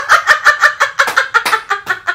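Women laughing hard: a rapid, high-pitched run of ha-ha pulses, about six a second, getting weaker toward the end.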